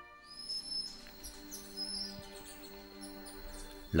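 High-pitched rainforest animal calls: a run of short, sharp chirps and one long, thin whistle, over a soft sustained music bed.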